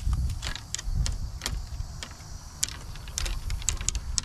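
Footsteps through grass and dry branches, with irregular twig-like clicks and snaps. A low, uneven rumble of wind buffeting or handling noise on the microphone runs under them.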